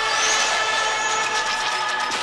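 Film trailer soundtrack: an X-wing starfighter's engine whooshing past, rising in pitch just after the start, over sustained orchestral music.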